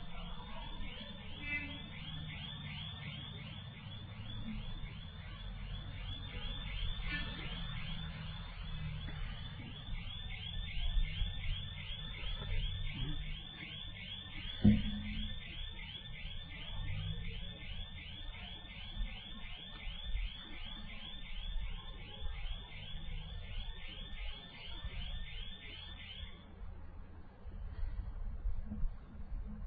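Electronic alarm beeping fast and evenly, about three high chirps a second, which cuts off suddenly near the end, over a low background rumble. A single thump sounds about halfway through.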